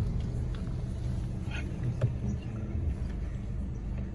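Car's engine and road rumble heard inside the cabin as it rolls slowly, a steady low drone, with a faint click about two seconds in.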